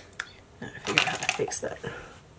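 Makeup items being handled on a table: a couple of single clicks, then a quick run of small plastic clicks and rattles as a brush and products are picked up.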